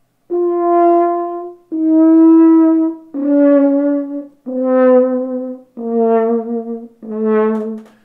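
A double French horn playing six held notes, each stepping down in pitch, each swelling and fading, with a wavering vibrato. It is a deliberate example of the 'bubbles' and excessive vibrato that make an ugly horn tone.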